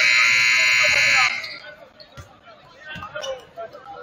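Gym scoreboard buzzer sounding one loud, steady blast that cuts off about a second and a half in, followed by crowd chatter.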